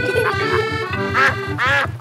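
A cartoon duck quacking twice in the second half, over light background music with a steady, even low pulse.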